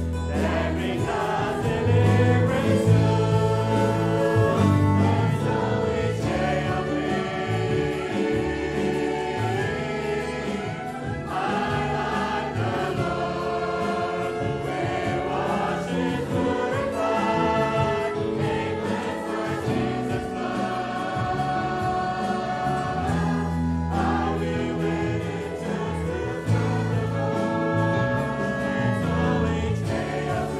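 Choir singing a Christian gospel hymn with instrumental accompaniment.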